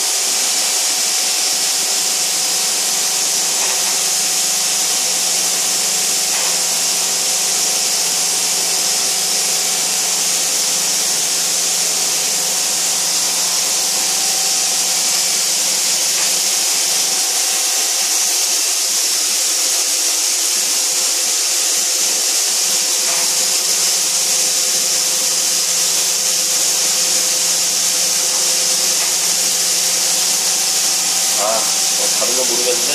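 CNC vertical machining center running: a loud, steady hiss with a faint hum of several steady tones beneath it.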